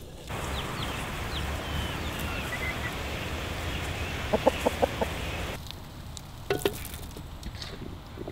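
A chicken clucking, a quick run of about five short clucks, over a steady outdoor background with a few faint high chirps.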